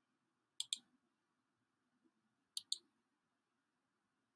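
Computer mouse clicks: two quick double clicks, one about half a second in and another about two seconds later, as the screen changes from a document to a full-screen slideshow.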